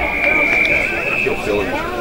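An umpire's whistle blown in one long, steady blast that steps slightly higher in pitch partway through and stops near the end, over spectators' voices.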